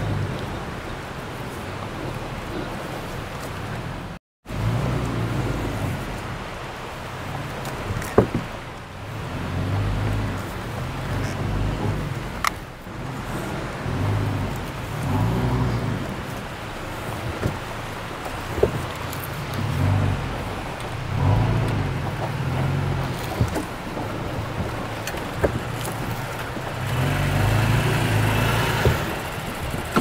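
Toyota Tacoma pickup's engine running at low speed as the truck is manoeuvred slowly on a dirt campsite, swelling and easing off every second or two with the throttle. The sound cuts out briefly about four seconds in.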